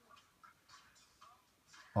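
A quiet pause: faint room tone with a few soft, indistinct sounds in the background.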